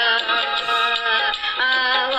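Indian film-song style music: a voice sings a long held, slightly wavering melody note over instrumental backing, breaks off about a second in, then takes up a new held note near the end.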